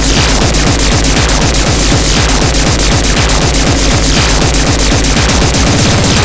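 Speedcore track: very fast kick drums in a rapid, unbroken barrage under a dense wall of loud electronic noise.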